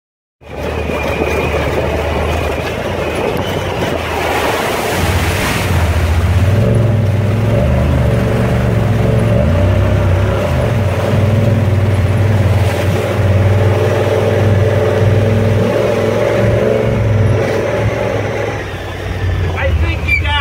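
Honda Pioneer 1000 side-by-side's engine running and revving up and down as it drives through a creek, with water splashing.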